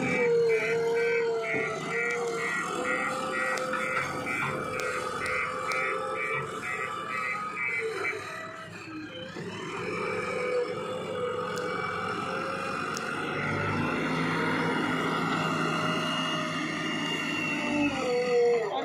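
JCB 3DX backhoe loader's diesel engine running under load, with a steady hydraulic whine, while the front bucket works sand and soil. A high-pitched beeping repeats about twice a second through the first half, and the sound dips briefly about halfway through.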